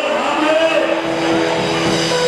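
Church worship music: a man singing into a microphone over steady held tones. The sung line glides and holds notes rather than breaking up like speech.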